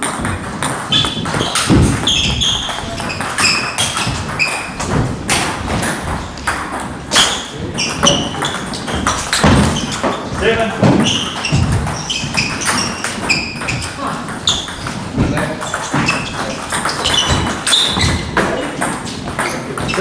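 Table tennis ball knocked back and forth in rallies: a quick run of sharp clicks of ball on bat and table throughout, with people talking in the background.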